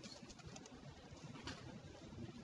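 Faint computer keyboard keystrokes, a few separate key clicks, over low room noise.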